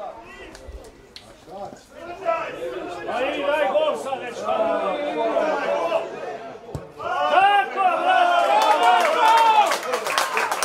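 Football spectators shouting and calling out over one another, quieter at first and then swelling into a loud collective reaction from about seven seconds in, just after a single short thump.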